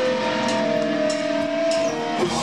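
Amplified electric guitar holding a sustained, ringing chord on stage, with three evenly spaced sharp hits over it, just before the full band comes in.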